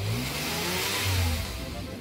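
A car engine revving up and back down with a rushing hiss, fading out near the end.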